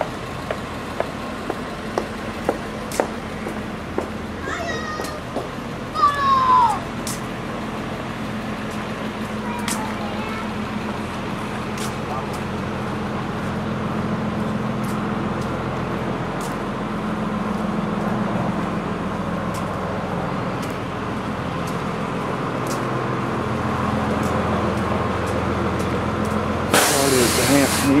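City street ambience: a steady low hum of vehicle engines and traffic, with footsteps ticking about once a second for the first dozen seconds and a short loud hiss near the end.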